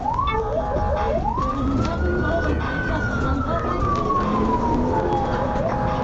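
Police patrol car siren on the move. Rapid rising yelp chirps switch to one long wail that climbs in about half a second, holds, and slowly falls over about four seconds, then the fast yelp returns near the end, over the car's engine and road noise.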